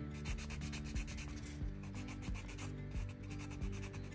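Quick, even strokes of a nail file rasping against the skin beside the fingernails, buffing off leftover cured gel.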